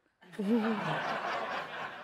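Studio audience laughing at a punchline, starting about a third of a second in, with one voice standing out early on, then tapering off near the end.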